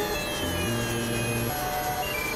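Experimental electronic synthesizer music: low held tones shift pitch about every half second, while thin high tones glide slowly downward above them.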